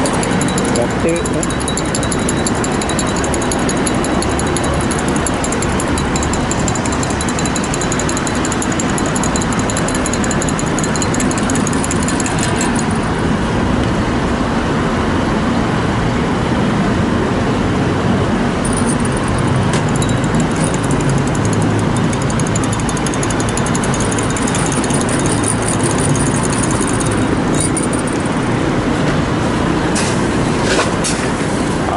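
Steady, loud background noise of engines running, with voices mixed in.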